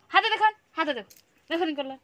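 A woman's high-pitched voice in three short utterances, the middle one falling in pitch.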